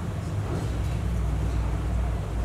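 A low, steady rumble of a running engine.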